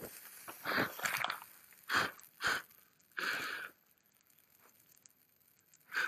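Faint, scattered crackles and short hisses, about five in a few seconds, the longest a hiss a little past the middle, from a BLHeli LittleBee 20A electronic speed controller that has caught fire and is smoking.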